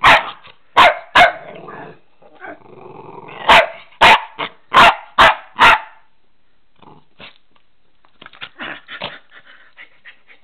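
A young puppy barking in rough play: about eight sharp, loud barks in the first six seconds, with a low growl between them around two to three seconds in. Over the last few seconds it gives only softer, short yaps.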